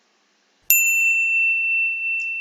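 A single bell ding from a subscribe-button animation's notification bell. It strikes about 0.7 s in and rings on as one clear, steady tone.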